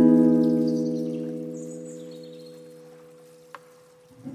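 Background music ending on a final strummed acoustic guitar chord that rings on and slowly fades away. There is a faint click about three and a half seconds in.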